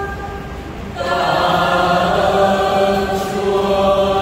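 A choir singing slow, long-held notes in harmony, the sound growing fuller and louder about a second in.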